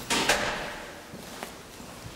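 A brief rattling clatter just after the start that dies away within about half a second, followed by a few faint ticks.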